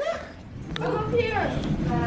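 A voice making short wordless sounds that rise and fall in pitch, with a sharp click just before them.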